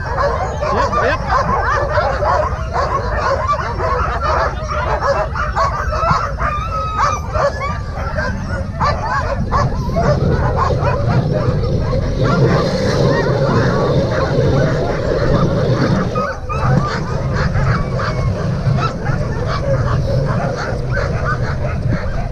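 A team of sled dogs in harness barking and yelping in an excited chorus, many voices overlapping, eager to run at a race start. A steady low rumble lies underneath.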